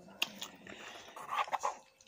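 Noodles being eaten with chopsticks: chewing and mouth sounds, with two sharp clicks in the first half second and a cluster of short louder sounds about one and a half seconds in.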